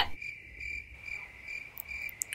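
Cricket chirping: a faint, steady, high-pitched trill.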